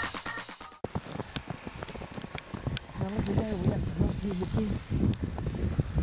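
Organ music that cuts off abruptly just under a second in, then footsteps crunching through deep snow with scattered knocks. From about three seconds in, a person's voice makes strained sounds without clear words.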